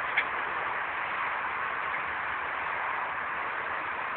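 Steady hiss of background noise, with one short click just after the start.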